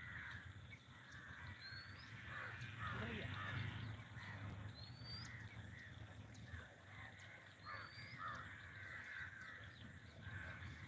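Crows cawing again and again, with a short rising whistle from another bird every few seconds and a steady high-pitched whine behind them.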